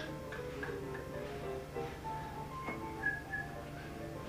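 Recorded ragtime piano music playing, quick separate notes running up and down over a steady low hum.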